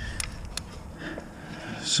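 A few sharp clicks from a half-inch drive ratchet turning out a loosened oil pressure sensor, over faint handling noise.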